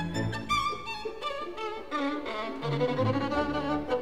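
Orchestral string music: a violin line moving through quick notes over lower strings carrying a bass line.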